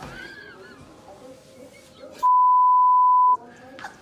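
A censor bleep: one steady, high beep lasting about a second, a little past halfway, with all other sound cut out while it plays, masking a word. A voice is heard before it.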